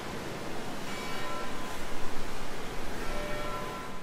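Intro soundscape: a steady rushing noise with bell-like tones ringing over it, swelling about a second in and fading out at the end.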